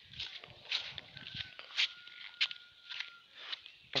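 Footsteps of a person walking on a sandy dirt street, about two steps a second. A faint thin high tone is held for about two seconds in the middle.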